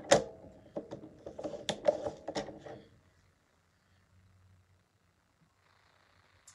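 Paper trimmer used to score cardstock: a sharp click, then a rattling plastic scrape dotted with clicks for about three seconds as the blade carriage is run along the track.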